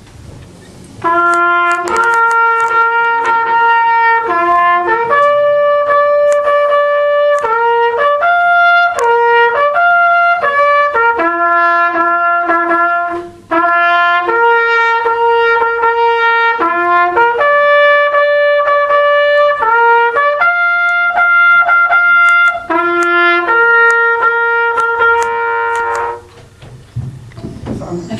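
A solo bugle call played on a brass horn: a slow melody of a few notes, some short and some long and held, with a brief break about halfway through. It is the call sounded for a minute of silence honouring the dead.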